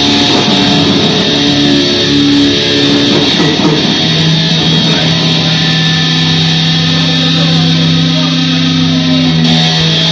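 Live instrumental heavy metal on distorted electric guitar: quick riffing at first, then, about four seconds in, a long sustained low note with a second note held above it.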